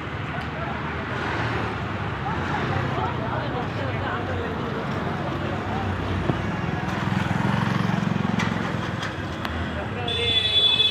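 Busy street ambience: many people talking at once over the low rumble of traffic, the rumble growing stronger for a couple of seconds near the end.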